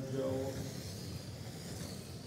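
Radio-controlled oval race cars running on the carpet track, a faint high motor whine that rises slightly toward the end.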